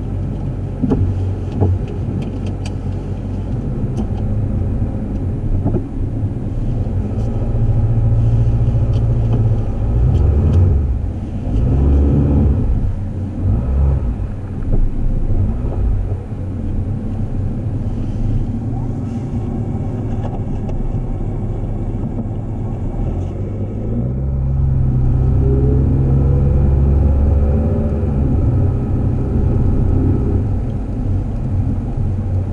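Car engine and drive noise heard from inside the cabin as the car moves off and drives along; the engine note rises as it accelerates about two-thirds of the way in.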